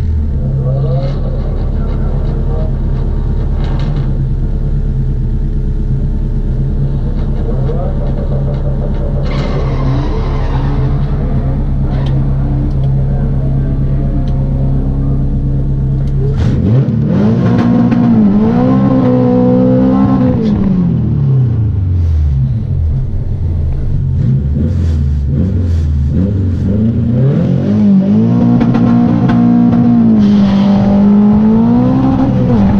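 Honda CRX's swapped H22 four-cylinder engine heard from inside the cabin, idling steadily at first. From about halfway through its note rises and falls again and again as it is revved and the car moves forward.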